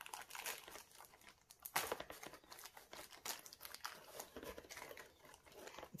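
Clear plastic film and hot glue crinkling and crackling as they are peeled and tugged off the rim of a cured resin bowl, in faint irregular crackles with a louder burst about two seconds in.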